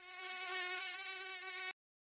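Mosquito buzzing sound effect: a steady, whining drone that fades in and cuts off abruptly just before the end.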